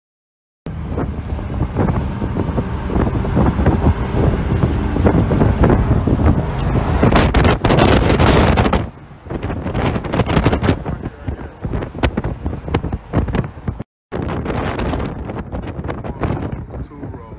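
Wind buffeting a phone microphone in an open-top convertible at freeway speed, mixed with road noise. It comes in suddenly about half a second in, eases and turns gustier after about nine seconds, and cuts out briefly near the end.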